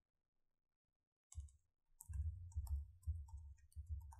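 Typing on a computer keyboard: irregular keystrokes start about a second in and come quicker from about two seconds in.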